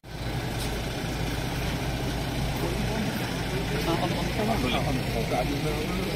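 Toyota Innova MPV's engine running as the car moves slowly at low speed, a steady low rumble, with a crowd's voices coming in over it after a couple of seconds.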